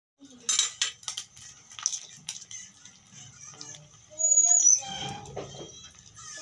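Eggshells being tapped and cracked against the rim of a steel bowl, a handful of sharp clicks over the first couple of seconds. About four seconds in there is a louder, brief sound with a high squeak.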